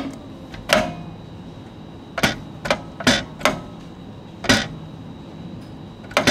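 About six sharp mechanical clacks and knocks at uneven intervals over steady background noise, from a self-service dispensing machine and a plastic bottle being handled at it.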